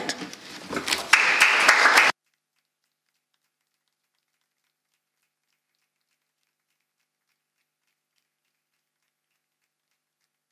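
Applause from a small group in a room, starting about a second in and cut off abruptly after about two seconds, followed by dead silence as the sound drops out.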